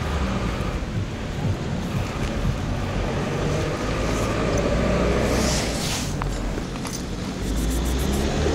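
Steady low mechanical rumble with a humming engine tone, in the manner of nearby motor traffic, and a brief hiss a little past the middle.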